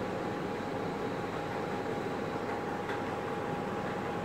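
Steady room noise: an even hiss with a faint, constant high tone running through it.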